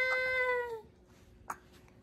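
A baby's long vocalization held on one high, steady note, falling slightly and stopping under a second in. A single soft click follows about a second and a half in.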